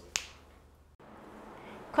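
A single short, sharp click just after the start, then near silence with faint room tone, broken by a dead-silent gap at an edit cut.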